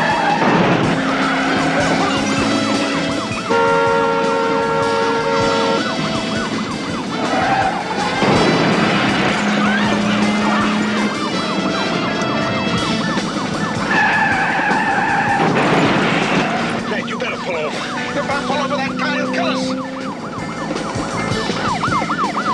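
Chase-scene soundtrack: a dramatic music score with long held notes over the noise of speeding vehicles, and a siren wailing at the start and again near the end.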